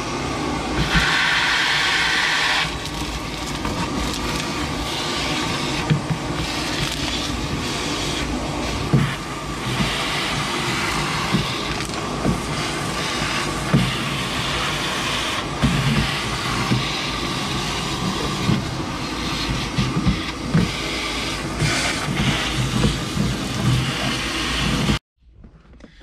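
Vacuum cleaner running steadily as its hose wand sucks dirt and debris off a tractor cab floor, with short rattles and knocks as debris goes up the hose and the nozzle bumps the metal. It stops suddenly near the end.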